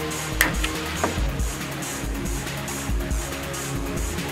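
Background music with a steady low beat. A sharp click about half a second in, the loudest moment, and a smaller one about a second in.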